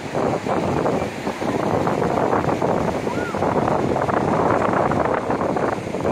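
Steady wind noise on the microphone over breaking surf, with the voices of many beachgoers talking in the background.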